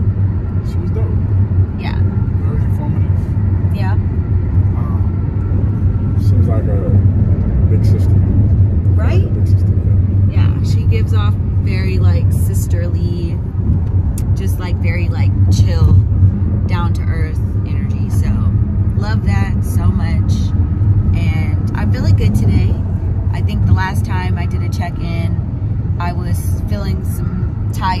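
Steady low rumble of road and engine noise inside a moving car's cabin, under people talking.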